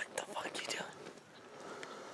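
A person whispering in short, breathy phrases, strongest in the first second, then softer.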